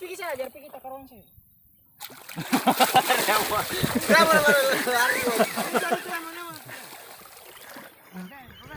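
Water splashing as feet kick and run through shallow sea water, loud from about two seconds in, with voices talking over it; a brief silent gap comes just before.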